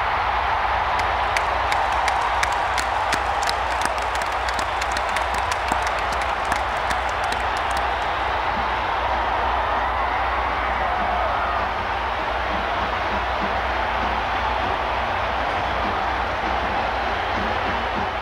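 Stadium crowd cheering on an old TV football broadcast just after a long touchdown run, a steady noise of many voices. Many sharp claps stand out over the first half.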